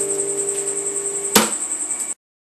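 Acoustic guitar's last strummed chord ringing out and slowly fading, stopped short by a sharp knock near the end. A steady high-pitched whine runs underneath.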